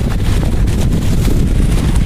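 Wind buffeting the phone's microphone: a loud, steady, uneven rumble.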